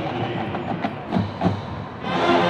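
Marching band percussion playing a sparse run of sharp, irregularly spaced knocks over a steady stadium background.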